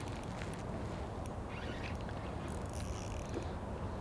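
A spinning reel being cranked while a hooked fish is played on a bent rod: faint, scattered clicks and a soft hiss around the middle, over a steady low rumble.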